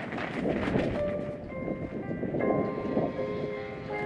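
Percussion ensemble playing: a low rumbling wash, then held pitched notes entering about a second in and building into a sustained chord.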